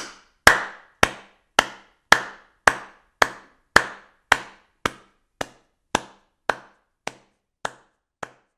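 A steady run of sharp single knocks or claps, just under two a second, each with a short ringing tail, slowly getting quieter.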